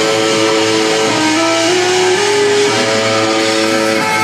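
A rock band plays live and loud, led by electric guitars. Held notes slide upward in steps a second or two in. The phone recording is overloaded by the bass.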